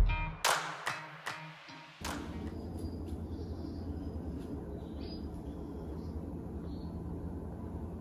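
The last struck, ringing notes of background music die away, then a steady low hum runs on: a generator running during load shedding.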